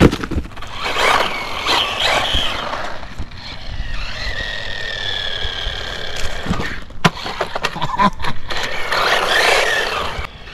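Brushless electric motor of a 1/16 scale RC car whining through rising and falling pitch as it is driven fast over asphalt, with a hiss of tyres on the road. A sharp knock comes at the very start and another about seven seconds in.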